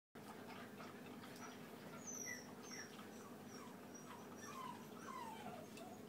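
Cocker spaniel puppies eating from metal bowls: faint small clicks and a string of soft, high whines that fall in pitch, several in a row.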